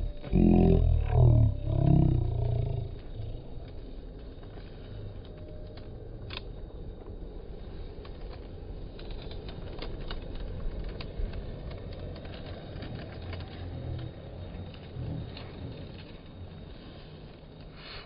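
A low man's voice making wordless humming or grunting sounds for about two and a half seconds. After that comes a steady low outdoor rumble with no distinct event in it.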